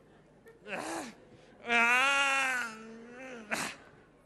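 A man's wordless cry of strain, drawn out for about two seconds, with a shorter falling grunt before it and a sharp breath at its end. It comes as he pulls a flower stem out of a tightly packed floor arrangement.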